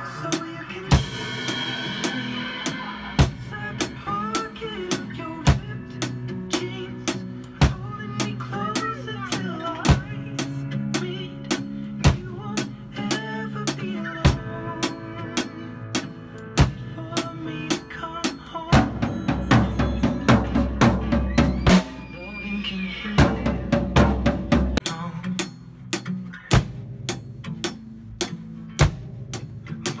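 Drum kit played along to a recorded backing song: a steady beat of kick drum, snare and cymbals over the music. About twenty seconds in the playing turns busier and heavier for a few seconds before settling back into the beat.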